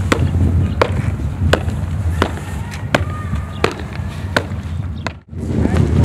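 A steady marching beat of sharp percussive strikes, about one every 0.7 seconds, over a low steady hum. It stops abruptly about five seconds in.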